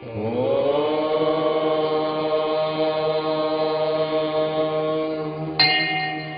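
Chanting: one long held tone that rises slightly in pitch as it begins, then stays steady. A brighter, higher sound joins about five and a half seconds in.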